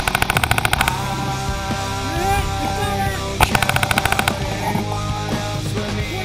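Two quick strings of shots from a Dye Proto Matrix PM5 electronic paintball marker, each about a second of rapid, even pops at roughly a dozen a second, one at the start and one about three and a half seconds in. Rock music plays underneath throughout.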